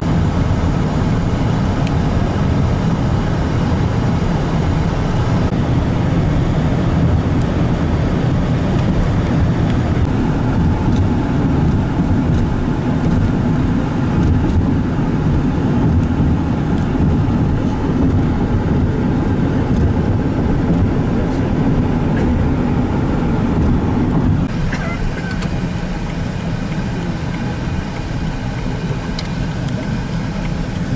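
Steady road noise of a car driving, heard from inside the cabin: a continuous low rumble of tyres and engine that drops to a quieter level about three-quarters of the way through.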